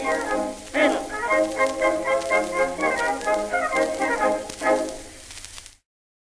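The orchestra on a 1912 Victor 78 rpm record plays the closing bars of the song, a quick run of notes ending in a final chord about five seconds in. The record then stops abruptly, just before the end.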